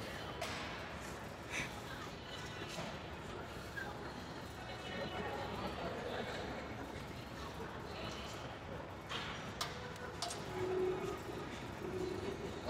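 Busy gym background: indistinct chatter with a few sharp metallic clanks, two of them close together near the end as the Smith machine bar is set back on its hooks.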